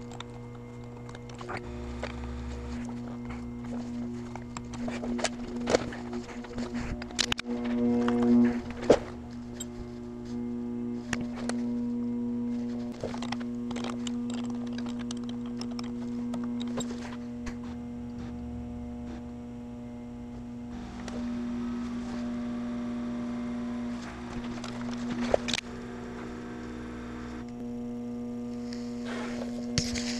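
Volkswagen Passat ABS pump motor running as a steady electric hum under scan-tool control, pushing fluid through the ABS module to purge trapped air. The hum steps louder and softer every several seconds. Scattered sharp clicks and knocks sit over it.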